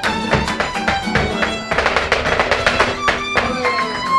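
Live flamenco music: a violin holds a melody while the dancers' heeled shoes strike the floor in rapid zapateado footwork, the strikes densest through the middle.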